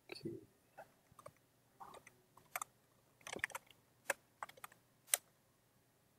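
Computer keyboard keystrokes: a string of uneven clicks as a terminal command is typed, with a short fuller burst at the start and a single sharp keystroke about five seconds in.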